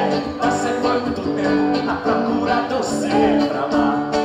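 Live band playing an axé song: electric guitars over a steady percussion beat, with singing.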